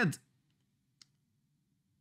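A single faint computer mouse click about a second in.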